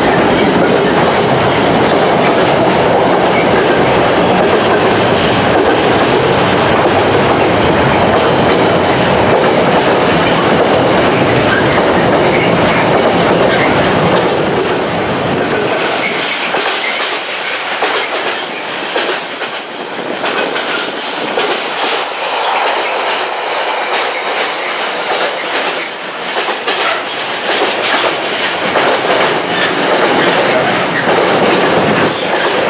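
A Freightliner Class 66 diesel freight train with a long rake of container wagons passing at speed. A heavy rumble, which includes the departing locomotive's engine, dies away about halfway through. The wagons then clatter over the rail joints with repeated knocks, and high wheel squeals come twice near the end.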